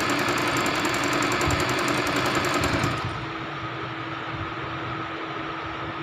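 Singer Simple electric sewing machine stitching, the needle running in a fast, even rhythm. About halfway through it gets quieter and settles to a steadier hum.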